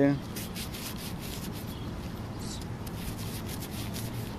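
Gloved fingers rubbing dirt off a small metal token, a steady scratchy rubbing close to the microphone.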